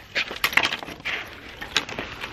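Broken ice chunks and a steel body-grip trap clinking and knocking as a trapped beaver is hauled up out of a hole chopped in the ice: a string of sharp, irregular clicks.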